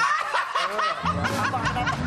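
A burst of people laughing breaks out suddenly and keeps going, with quick high-pitched laughs.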